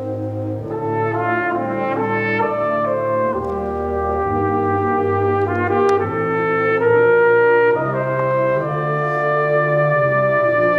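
Solo trumpet-family horn playing a melody of held notes over a concert wind band's sustained chords, growing gradually louder.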